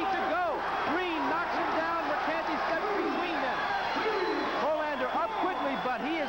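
A man's voice speaking: boxing broadcast commentary.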